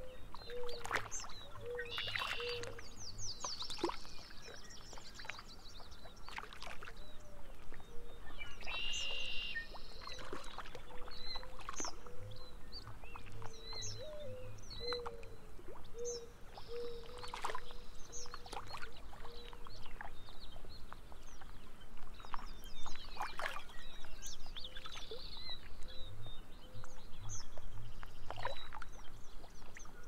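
Several songbirds calling at once: short high chirps and a few fast trills, over a faint lapping of water and a low steady tone.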